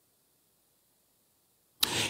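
Near silence: a dead pause with no audible sound, broken just before the end by a man's voice starting to speak.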